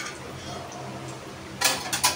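A brief clatter of cutlery against a plate about one and a half seconds in, over a faint steady hum.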